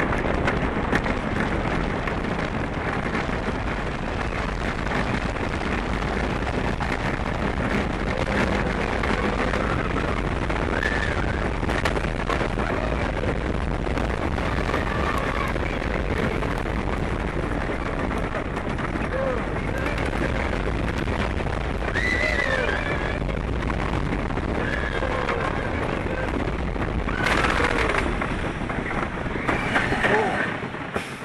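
Wooden roller coaster train running fast along its track: a continuous rumbling clatter of wheels on the wooden track, with wind rushing over the front-seat microphone. Riders' voices yell out above it now and then, loudest near the end.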